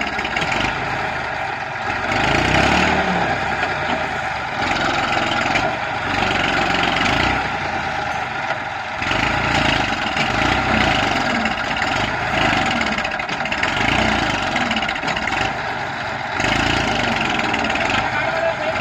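Massey Ferguson 1035 tractor's three-cylinder diesel engine labouring under load, revving up and easing off again every second or two as it strains to pull a loaded trolley out of soft soil where it is stuck.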